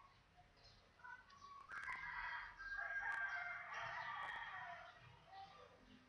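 A faint, drawn-out animal call lasting about three seconds, starting a little under two seconds in, with a few soft clicks.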